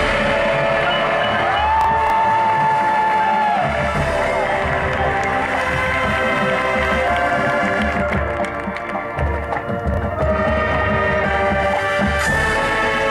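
Marching band playing: brass and winds holding sustained chords over drums and a front ensemble of mallet percussion, with a high note held for about two seconds from around two seconds in.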